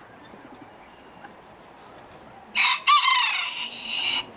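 A rooster crows once: a single loud, drawn-out crow of about a second and a half, starting a little past halfway through.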